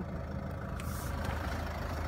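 The Land Rover Freelander's 2.2-litre diesel engine idling steadily, heard from inside the cabin as a low, even hum, with a short hiss about a second in.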